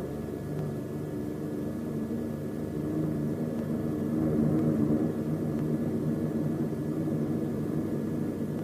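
Steady drone of a propeller bomber's engines in flight, swelling slightly in the middle.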